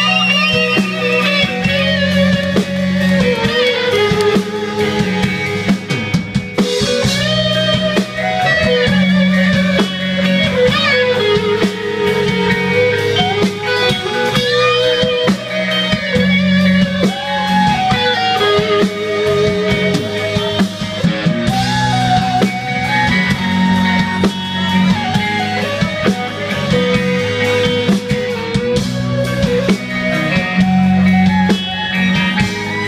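Live rock band playing an instrumental passage: electric guitars and a drum kit over a steady bass, with a lead melody line that wavers in vibrato.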